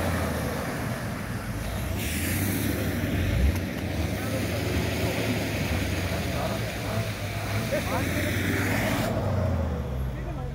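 A car's engine running with a steady low hum. A broad hiss comes in sharply about two seconds in and cuts off about a second before the end.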